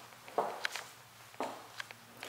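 Footsteps of a person walking across a vinyl plank floor: two clear footfalls about a second apart, each followed by a lighter one.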